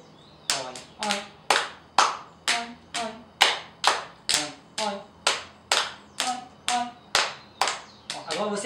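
Hands clapping a steady rhythm, about two claps a second, starting about half a second in.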